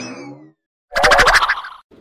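Cartoon sound effects: a quick rising pitch sweep, then about a second in a loud wobbling boing, like a twanged spring, lasting under a second.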